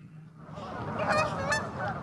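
Geese honking a few times in the second half, over outdoor background noise that swells in about half a second in.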